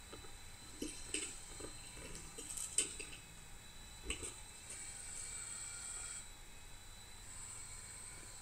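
Quiet room tone: a faint steady hiss with a thin high whine, broken by a few faint short ticks.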